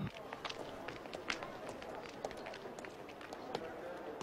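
Footsteps of several people on a hard terminal floor: irregular, overlapping short clicks, several a second.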